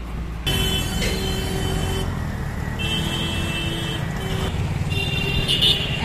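Street traffic heard from a moving open vehicle: steady engine and road rumble starting about half a second in, with horn tones sounding now and then.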